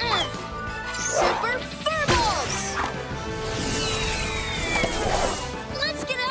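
Cartoon action-scene soundtrack: background music under crash and whack impact effects and short, high yelping cries. Past the middle comes a long whoosh with a falling whistle.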